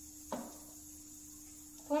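A spoon tapped once against the rim of a steel kadai as turmeric powder goes in, a short light knock over a faint steady hum. A woman's voice starts near the end.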